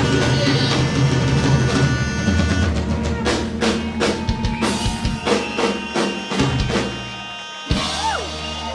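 Live rock band playing, with held chords over bass and drums; from about three seconds in the drummer plays a run of separate drum and cymbal hits, the last one near the end.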